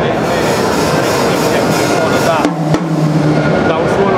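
Drum kit being played loudly and continuously, dense drum strokes under a man's talking, with a steady low ringing tone lasting about a second a little past the middle.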